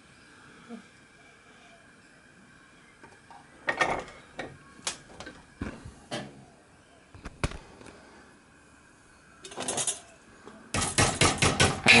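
A few separate knocks and clanks at the bench vise, then near the end rapid hammer blows, several a second, on the edge of an annealed copper disc clamped over a former, turning a flange for a small model-steam-engine boiler end.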